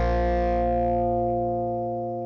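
The last distorted electric guitar chord of a rock song, held and ringing out. Its bright upper part dies away first, and the whole chord slowly fades.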